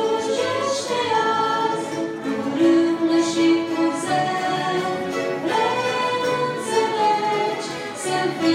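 Amateur string orchestra of violins and plucked strings playing a slow piece in long held notes that change together every second or so.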